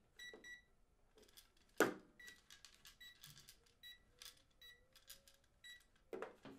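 Short electronic beeps from a small cube-shaped digital device as its buttons are pressed, about eight beeps at uneven intervals. A single louder knock comes about two seconds in.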